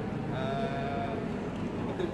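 A man's voice holding one steady, drawn-out vowel for about a second, like a long hesitating 'ehh', within the flow of a spoken briefing.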